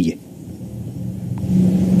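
A man's low, steady hum in a pause between spoken phrases, held on one pitch and growing louder just before he speaks again.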